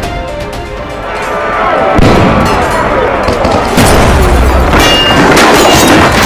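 Dramatic trailer score building up, with a sudden heavy boom about two seconds in and a deep low rumble from about four seconds on.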